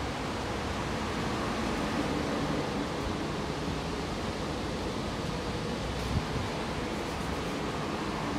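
Steady whooshing hum of ventilation and air-conditioning inside an Alstom Metropolis metro carriage standing with its doors open, with a single short knock about six seconds in.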